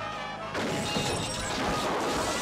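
Film soundtrack: a sudden loud crash about half a second in, as a body lands through the roof of a river tour boat, over the film's music score.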